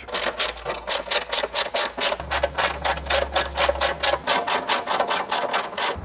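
Ratchet socket wrench with a 12mm socket clicking in a fast, even rhythm, about seven clicks a second, as the bash plate bolts are run in and nipped up.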